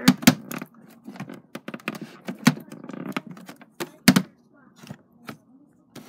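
A quick, irregular run of sharp clicks and knocks from objects being handled, the loudest right at the start and about four seconds in.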